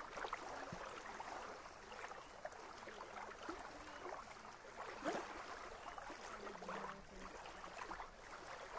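Small lake waves lapping on a sandy shore: a faint, irregular run of soft splashes.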